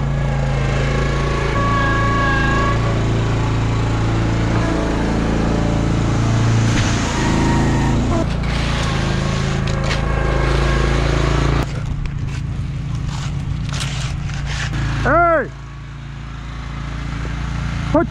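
A heavy engine runs steadily, then drops away about two-thirds of the way through. A short shouted call with a rising and falling pitch comes a few seconds before the end.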